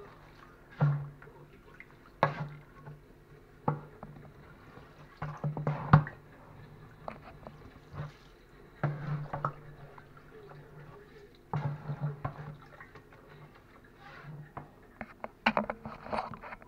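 A wooden paddle stirring rice into hot water in a plastic barrel: irregular sloshing and splashing with scattered knocks, over a low hum that comes and goes.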